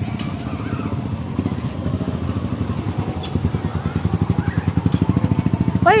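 Small motorcycle engine of a passenger tricycle running while under way, a rapid even beat that grows louder over the last two seconds.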